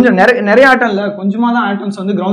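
Only speech: a man talking.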